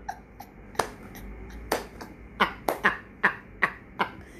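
A woman laughing in short, sharp bursts, about seven of them at uneven spacing, most coming in the second half.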